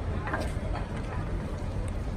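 Steady low rumble of background noise with faint, indistinct voices.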